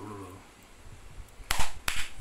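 Two sharp hand claps about a third of a second apart, near the end.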